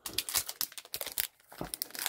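Wrapper of a trading card pack crinkling as it is handled and torn open by hand, in a rapid string of crackles with a short break about one and a half seconds in.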